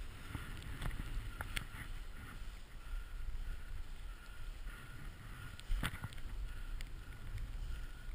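Snowboard carving through deep powder with wind on a body-mounted camera: a steady low rush of snow and air, with scattered small clicks and one sharper knock about six seconds in.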